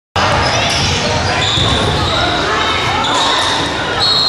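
A basketball being dribbled on a hardwood gym floor, with repeated thuds over an echoing din of players' and spectators' voices. A couple of held high squeaks come through, about a second and a half in and again near the end.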